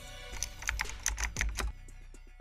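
Computer keyboard typing, a quick run of key clicks that stops shortly before the end, over background music.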